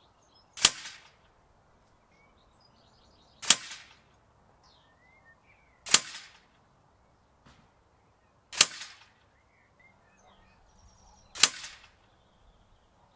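FAC-power air rifle firing five shots of 15.89-grain Diabolo pellets, one sharp crack every two and a half to three seconds, each trailing off briefly.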